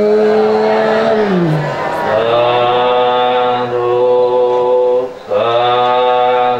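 Men's voices intoning a Buddhist chant in long held notes over a microphone: a drawn-out note that glides down and stops about a second and a half in, then a lower voice chanting in long steady notes from about two seconds, with a brief break near five seconds.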